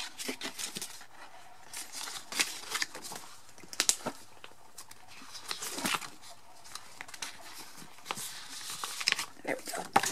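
Plastic binder sleeves crinkling and rustling as postcards are handled and slid into the pockets, in irregular bursts with a few sharper crackles.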